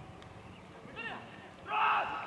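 Voices shouting across an outdoor football pitch: a short call about a second in, then a louder, longer shout near the end, over a faint steady background.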